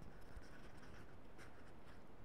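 Faint, quick scratching with light ticks: fingers scratching and tapping a small hand-held object right against the microphone, as ASMR triggers.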